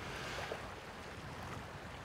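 Quiet, steady outdoor ambience of wind and small waves lapping at a lakeshore, with no distinct event.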